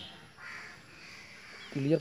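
A crow cawing, harsh and rasping, with a man's voice starting near the end.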